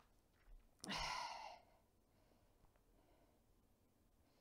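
A woman's single breathy sigh, lasting under a second, about a second in; near silence for the rest.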